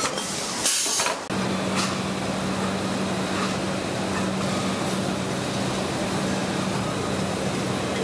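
Factory machinery noise. A steady hiss carries a brief louder hiss about a second in. Then it changes abruptly to a steady low hum under a noisy background, with a few faint clicks.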